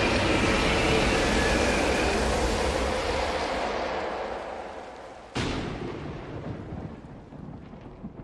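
Thunder: a loud clap that rolls and slowly fades over about five seconds, then a second sharp crack a little after five seconds in that fades again.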